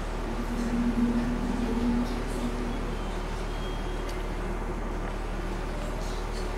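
Steady low electrical mains hum with room noise from the sound system. A single low note is held for about a second and a half near the start.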